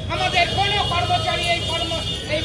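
A voice speaking continuously over a steady low background rumble.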